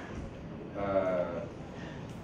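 A man's drawn-out, wavering hesitation sound, a held "eeeh" of under a second near the middle, between phrases of a talk.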